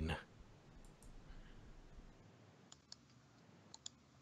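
Faint room tone with a few soft, sharp clicks near the end, after a voice trails off at the start.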